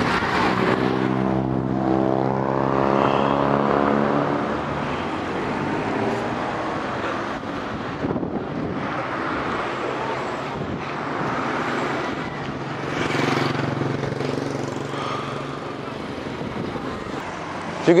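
Road traffic passing close by: a vehicle's engine goes past in the first few seconds with its pitch falling as it passes, and another engine is heard later.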